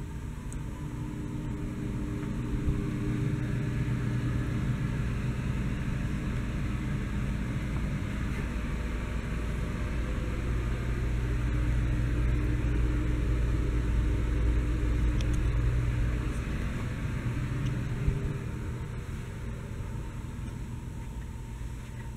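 A steady low rumble with a faint hum running through it. It swells over the first few seconds and eases off after about 16 seconds, with a single small click near the end.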